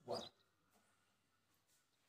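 Near silence, with one faint, short, high chirp of a small bird just after the start.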